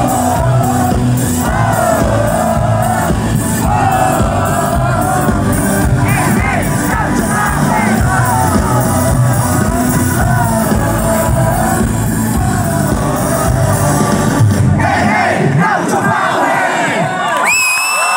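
Rock band playing live and loud, heard from inside the crowd, with voices singing over it. About fifteen seconds in the band's low end stops, leaving crowd voices and cheering.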